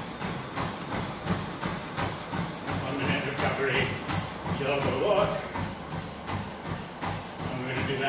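Running footfalls striking a treadmill belt at a hard interval pace, about three a second, over the treadmill's steady motor and belt hum.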